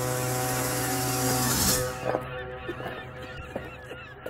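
Foghorn blast: a deep, steady horn tone with an airy hiss over it, cutting off about two seconds in with a short falling-pitch note at the end.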